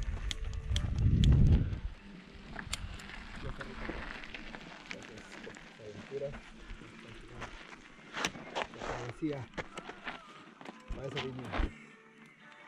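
A brief low rumble on the helmet camera's microphone about a second in, then scattered clicks and knocks as a mountain bike is handled and laid down on dirt, with faint voices in the background.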